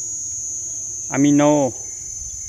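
Steady, high-pitched insect chorus: one unbroken shrill whine.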